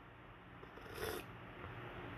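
A person sipping tea from a mug: one faint, brief slurp about a second in.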